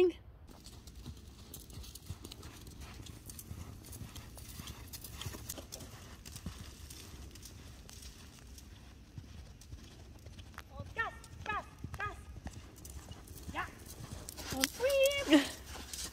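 Hoofbeats of a horse cantering on the sand of a riding arena, a run of short repeated thuds.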